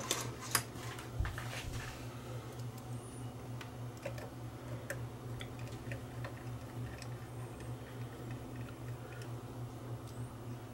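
Scattered light clicks and taps of hands handling the metal and plastic parts of an open Sony SLV-N71 VCR tape deck, a few louder clicks in the first two seconds, over a steady low hum.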